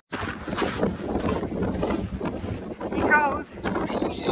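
Wind buffeting the microphone: a rough rushing noise that rises and falls. A short laugh comes about three seconds in.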